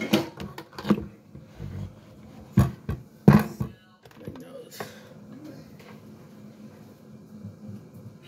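Blender jar full of tomato purée being handled and lifted off its motor base, with a few sharp knocks about one, two and a half, and three seconds in. The blender motor is not running.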